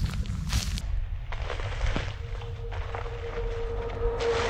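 Footsteps on a dirt track, over a low rumble of wind on the camera's microphone.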